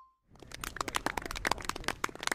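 A chime note fades out. After a short silence, a rapid, irregular crackling of small clicks starts about a third of a second in and runs on.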